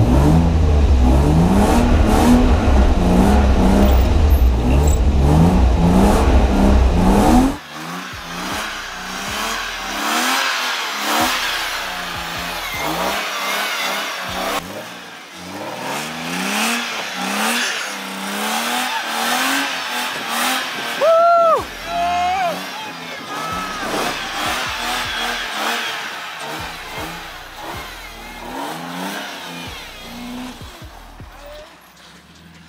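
BMW sedan's engine revving hard in repeated rising pulls while the car drifts on snow, loud with a deep rumble inside the roll-caged cabin for the first seven or so seconds. After that it is heard from outside the car, quieter, with the revs still rising and dropping again and again.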